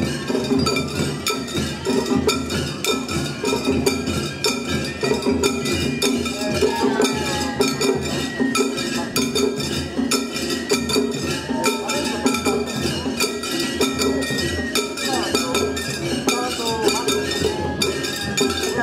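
Shagiri festival music: taiko drums beaten in a fast, steady rhythm under constant clanging of hand-held metal cymbals.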